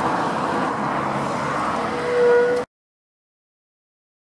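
A car passing by on the road, a steady rush of tyre and engine noise that swells near the end with a brief held tone, then cuts off suddenly.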